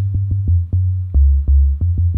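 Jungle-style bass line from a simple sine oscillator, a thumping sequence of deep notes stepping between a few low pitches, each note starting with a short click.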